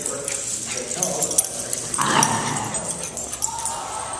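Puppies at play, one giving a short bark about halfway through, with a falling pitch.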